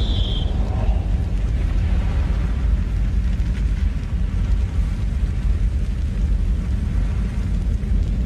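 A steady, deep rumble of sound-design effects standing for the churning, erupting surface of the Sun, with a short high tone trailing off in the first half second.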